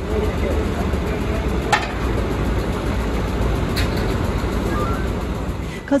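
Roadside traffic noise with a steady low rumble and faint voices of men nearby. Two brief sharp sounds come about two and four seconds in.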